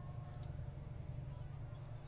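Low steady background hum with faint steady tones above it, and one faint click about half a second in.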